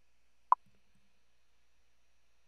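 A single short, sharp computer-mouse click about half a second in: a browser tab being selected.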